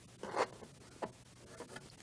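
Faint room tone with a brief soft rustle about half a second in and a small click about a second in.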